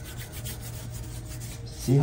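Wide flat brush rubbing grey acrylic paint across a sheet of paper in repeated scrubbing strokes.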